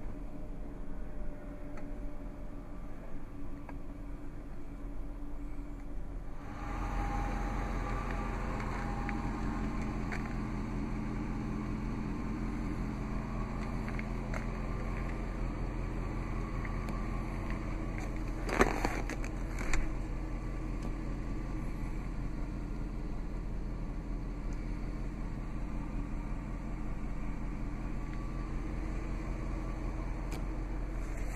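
Steady low hum of an idling vehicle engine, louder and fuller from about six seconds in. Two sharp clicks a second apart come just past the middle.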